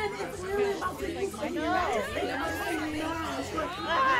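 Speech only: overlapping voices, a line of Japanese anime dialogue mixed with several women's exclamations.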